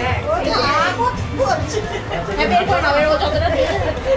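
Several people chattering over background music.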